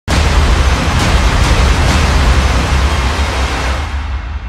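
Logo-intro sound effect: a loud, steady rush of noise over a deep rumble, starting abruptly and easing off slightly near the end.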